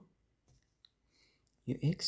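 A single light, sharp click about a second in, from a stylus on a tablet screen while handwriting digital notes, with faint stroke sounds around it; a man's voice says "x" near the end.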